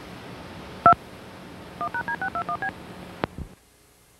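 DTMF touch-tone cue tones recorded on a Disney VHS tape, sounding the sequence '2 1#D621B': a single tone about a second in, then a quick run of seven short tones, about seven a second, over tape hiss and a low hum. Near the end a click sounds and the hiss cuts off as the recording ends.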